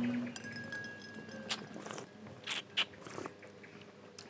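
Soft sipping and mouth sounds as two people taste a gin and tonic: a few faint, short slurps and lip smacks.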